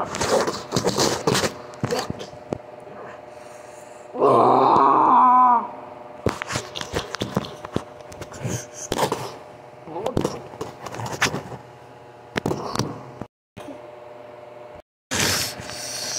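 A person voicing a toy monster: one long, loud vocal cry about four seconds in that drops in pitch at its end, amid short knocks and scrapes of a small plastic figure handled right against the microphone. A faint steady hum runs underneath.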